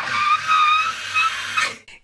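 A woman's high-pitched, breathy scream of excitement, held on one pitch for about a second and a half and stopping shortly before the end.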